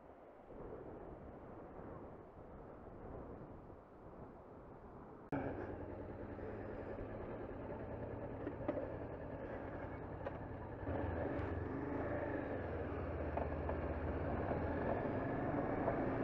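Faint steady noise for the first five seconds, then, after a sudden jump in level, a Honda CBR500R's parallel-twin engine running steadily under way with wind noise, growing a step louder about eleven seconds in.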